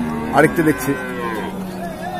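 A cow mooing: one long, drawn-out moo of about a second and a half that dips slightly in pitch toward its end, with market voices underneath.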